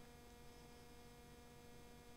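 Near silence with a faint, steady electrical hum made of a few level tones.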